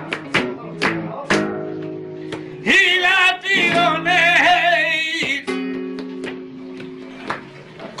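Flamenco cante with guitar: sharp guitar strums ring out in the first second or so, then a man's voice sings a long ornamented, wavering line, and held guitar chords follow, with one more strum near the end.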